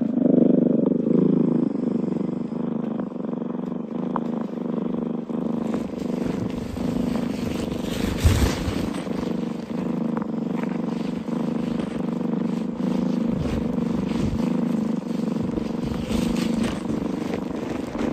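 A steady low mechanical drone made of several held tones, like a running engine, with a few brief rustles or bumps over it, loudest about eight seconds in.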